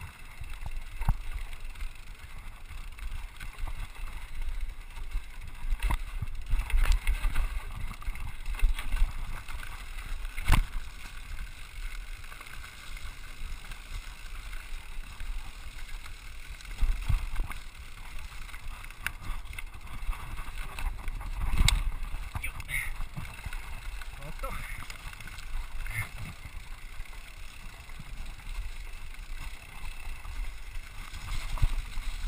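Scott Scale RC 29 carbon hardtail mountain bike descending a dry dirt singletrack: tyres rolling over the trail with wind rumbling on the microphone, and repeated sharp clatters as the rigid-framed bike hits roots and rocks, the loudest about ten seconds in and again just past twenty seconds.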